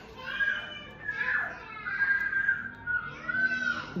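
Children's voices in the background: high, drawn-out calls and squeals that rise and fall in pitch, fainter than the nearby talking voice.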